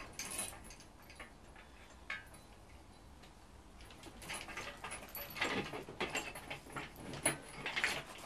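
Metal clinks, knocks and scrapes as a steel engine stand's mounting head is slid onto the bracket bolted to the back of the engine. It is quiet apart from a single click about two seconds in, then a run of irregular knocks and scrapes starts about halfway through.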